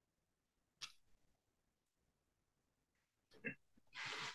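Near silence: room tone, broken by two faint short sounds, one about a second in and one near the end.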